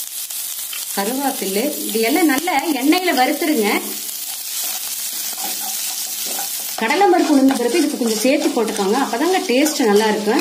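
Chana dal, urad dal, green chillies and curry leaves sizzling in hot oil in a nonstick kadai, stirred with a wooden spatula. A wavering voice sounds over the sizzle from about one to four seconds in and again from about seven seconds on.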